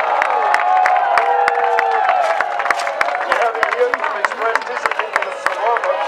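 Crowd cheering and clapping: many voices shouting at once over scattered sharp hand claps.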